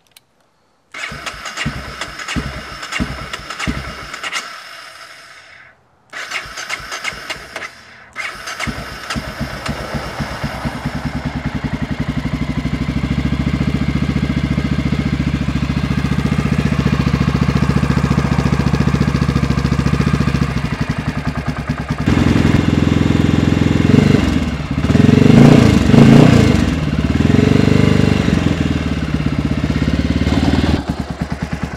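Electric starter cranking a 1994 Honda XR650L's air-cooled single-cylinder engine: two short tries, then a third on which the engine catches about ten seconds in. It then idles unevenly and is revved a few times near the end. This is the first start since a no-spark fault that the owner puts down to a failing CDI box.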